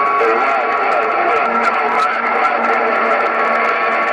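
Incoming signal on a President HR2510 radio's speaker: a distant station coming in rough, with a faint garbled voice buried under hiss and steady tones.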